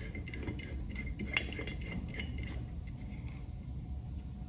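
Light clicks and scraping of a plastic LED bulb being screwed into a screw-type lamp holder: a handful of small ticks, the sharpest about a second and a half in, then quieter handling.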